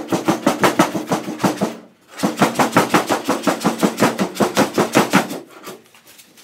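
Hand scraper working quickly back and forth over a car's steel roof, stripping the glued-on vinyl-top backing. It makes even strokes about six or seven a second, in two runs with a short break about two seconds in.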